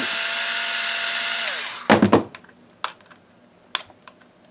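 Black & Decker cordless electric screwdriver running with a steady whine for about a second and a half, then winding down as it stops, apparently backing out the screw of the toy screwdriver's battery cover. A short plastic clatter follows, then a couple of light clicks.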